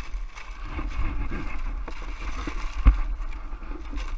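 Plastic tarp rustling and crinkling as it is pulled off snow, with one sharp thump about three seconds in, over a steady low rumble.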